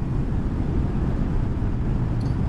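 Steady low rumble of wind and road noise from a motorcycle under way.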